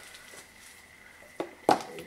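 Cardboard album box and slipcase being handled as the album is slid out: a low rustle, then two short sharp knocks about a second and a half in, the second the louder.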